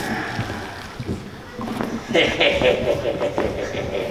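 Actors' raised voices without clear words during a staged struggle, quieter for the first second and a half and then louder, with a few short knocks.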